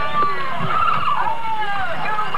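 Many voices talking and calling over one another, no single voice clear, with pitches sliding up and down throughout.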